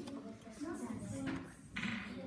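Quiet voices of children and an adult talking in the background, with a brief scratchy noise near the end.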